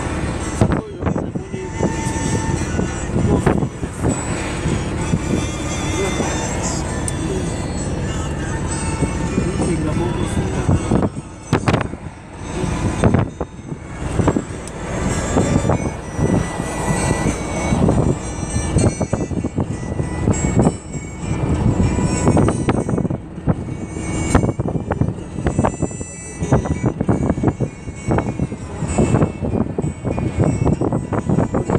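Voices and music inside a moving car, over the car's road noise.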